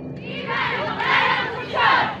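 Many voices shouting a chant together in unison: a costumed dance troupe calling out in two shouted phrases while the drums and brass are silent.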